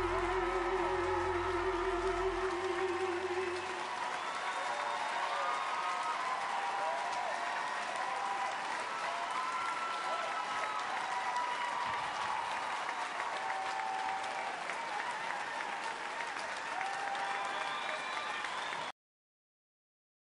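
A male singer holds a final note with vibrato over the accompaniment, ending about four seconds in. Then a studio audience applauds, with voices calling out, until the sound cuts off near the end.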